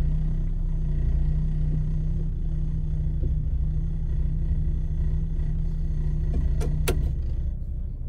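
Car idling at a standstill, heard from inside the cabin: a steady low hum that drops away about seven seconds in, with a couple of brief sharp sounds just before it fades.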